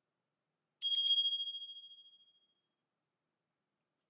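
A single high, bell-like ding from a Home Assistant Voice Preview Edition speaker, about a second in, ringing out and fading over about a second and a half. It is the pre-announcement chime the voice assistant plays before it speaks an announcement.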